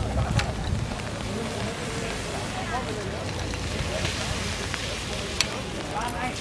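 Indistinct chatter of onlookers' voices over wind rumbling on the microphone, with two sharp clicks, one about half a second in and one near the end.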